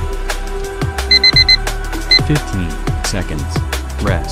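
Electronic drum-and-bass workout music with a steady beat, over which an interval timer sounds four quick high beeps about a second in and one more a second later, marking the end of an exercise interval and the start of a rest.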